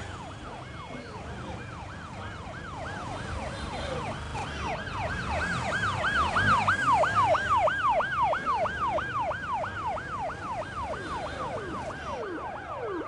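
A vehicle siren yelping in rapid falling sweeps, about two or three a second, growing louder toward the middle and then easing off, over a low rumble of traffic.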